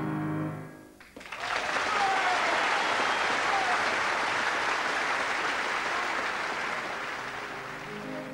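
A piano's last chord dies away in the first second. Then a concert-hall audience breaks into applause that carries on steadily and eases slightly near the end.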